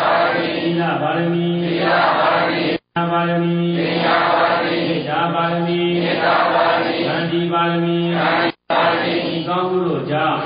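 Buddhist chanting by a man's voice in a drawn-out monotone, each syllable held for about a second on much the same pitch. The sound cuts out suddenly twice, for a fraction of a second each time.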